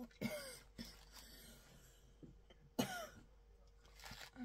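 A woman coughing twice: a short cough about a quarter second in and a louder one near three seconds in.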